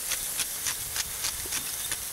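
Smashed elk burger patties frying on a hot griddle: a steady sizzle with irregular crackling pops.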